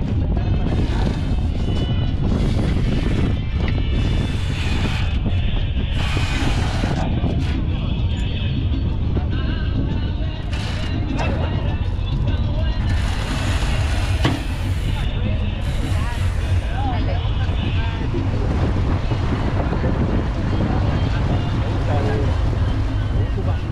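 Steady low drone of the tall ship's engine under way, with wind noise on the microphone coming and going, and background music and passengers' voices.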